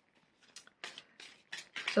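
A few faint, short rustles and clicks of tarot cards being handled, spread over the second half.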